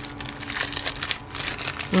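Plastic packaging crinkling in irregular crackles as a wrapped pack of disposable lip applicator brushes is handled among plastic air-pillow packing.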